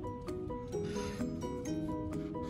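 Felt-tip marker rubbing across paper in strokes, one near the start and a longer one about a second in, over light background music with a steady melody.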